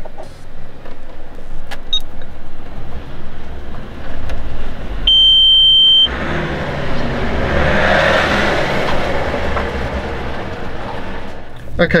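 A key-programming tester gives one steady, high electronic beep about a second long, about five seconds in. After it, a rushing noise swells and fades over several seconds.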